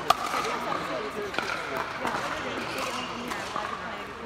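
Background chatter of several voices, with two sharp knocks: the loudest right at the start, another about a second and a half in.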